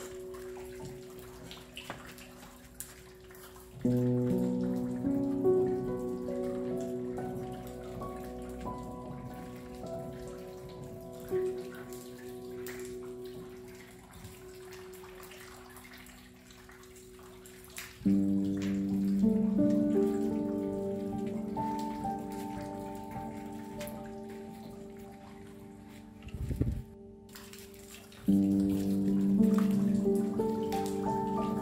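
Slow, calm piano music over a steady patter of rain. New chords are struck about four seconds in, again at about eighteen seconds and near the end, each ringing on and slowly fading.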